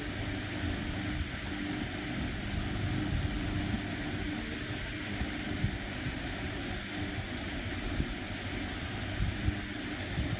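A steady low mechanical hum, like a motor or engine running, with a few soft knocks.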